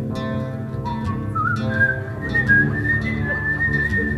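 A man whistling a melody over guitar chords. The whistle comes in about a second in, climbs in steps, then holds a long, wavering high note to the end.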